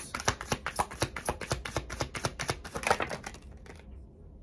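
A deck of tarot cards being shuffled by hand: a fast, irregular run of card clicks and flicks that stops shortly before the end.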